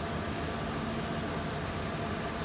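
Steady mechanical hum and hiss, like a fan running, with a few faint light clicks.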